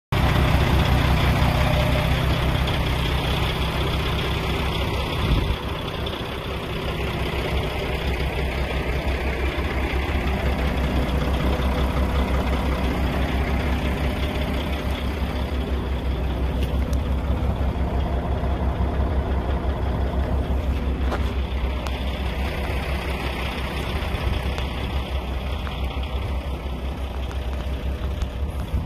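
A semi truck's diesel engine idling steadily, a low rumble, with a brief knock about five seconds in.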